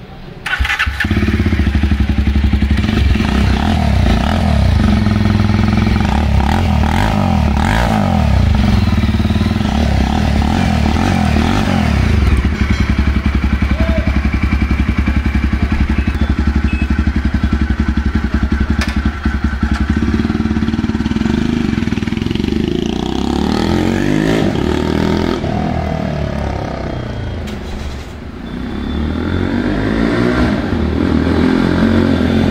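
Jawa Perak bobber's 334 cc single-cylinder engine firing up about half a second in, then idling steadily through a custom exhaust with the baffles removed. Toward the end the engine note rises and falls several times.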